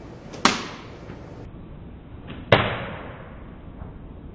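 Open-hand slap to the face, heard twice as slowed-down replays: a sharp smack about half a second in, then a deeper, drawn-out smack about two and a half seconds in, the loudest, with a tail that dies away over about a second.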